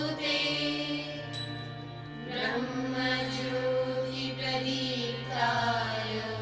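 Devotional mantra chanting set to music, sung in long held notes over a steady low drone.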